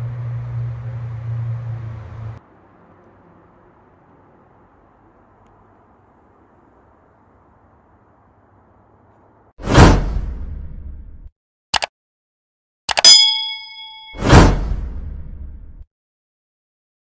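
Edited sound effects for an animated end graphic: a loud whoosh-and-boom hit that dies away over about a second and a half, a short click, a bright bell-like ding that rings briefly, then a second whoosh-and-boom hit. Before them, a steady low outdoor hum cuts off about two seconds in, leaving near quiet.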